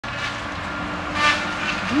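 Logging machinery working in the distance: a steady engine drone with a held tone, swelling briefly just past halfway.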